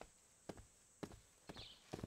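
Faint footsteps on a hard floor, a person walking at about two steps a second. A short high chirp sounds once near the end.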